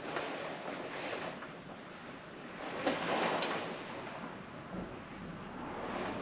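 Faint rustling and scuffing of someone moving about in a tank's engine compartment, a little louder about three seconds in.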